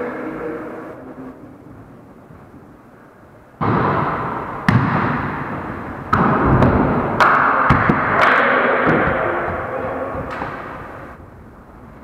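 A volleyball being played in an echoing gym: about half a dozen sharp smacks of hands on the ball, from about four to ten seconds in, over a loud continuous rush of noise that starts suddenly and fades out near the end.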